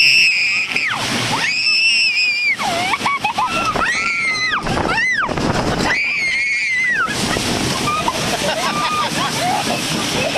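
A young girl screaming on a rollercoaster: long high screams of about a second each, with shorter rising-and-falling shrieks between them, over rushing wind on the microphone. After about seven seconds the screams give way to lower, broken vocal sounds.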